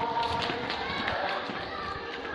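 Footsteps of people walking on a concrete street, with voices talking in the background.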